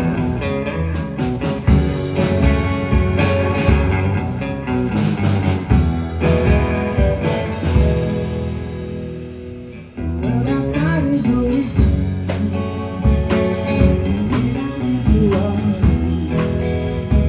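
Live rock band playing, led by an electric guitar over drums. The music thins out and fades a little past halfway, then the full band comes back in sharply.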